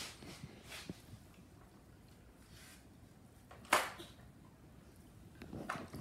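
Quiet handling of a damp plush toy and towel: faint soft rustles, with one short, louder brushing rustle a little under four seconds in.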